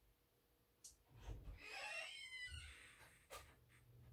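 Near-silent room with faint distant household noises: a couple of soft clicks and a brief, high, wavering sound in the middle.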